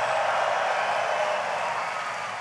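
Large audience applauding, a dense wash of clapping that slowly fades.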